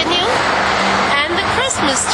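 A woman speaking, over an even rushing noise during the first second or so.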